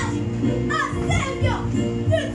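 Electronic keyboard playing sustained chords and bass notes, with children's voices singing and calling over it.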